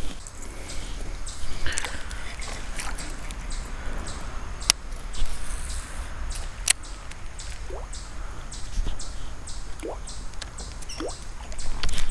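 Fishing reel being wound through a steady retrieve of a topwater lure, with faint regular ticks from the reel and light water sounds, and two sharp clicks midway.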